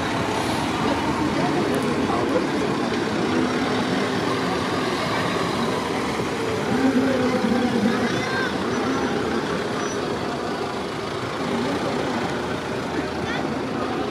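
A police van's engine running as it rolls slowly past at close range, with the chatter of spectators' voices along the road.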